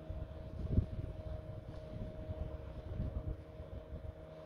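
Wind buffeting the microphone in uneven low gusts, strongest about a second in, over the steady hum of a small motorboat's engine running on the water.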